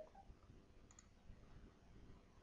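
Near silence: room tone, with one faint computer mouse click about a second in.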